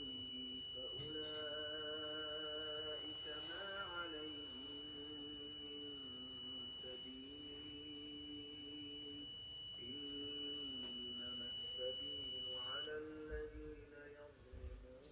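Piezo buzzer of an electronic smart-safe alarm sounding one continuous high-pitched tone, the intruder alarm that goes off when the safe detects a thief; it cuts off suddenly near the end as the correct code is entered and the safe unlocks. Under it runs a low hummed melody that glides between a few notes.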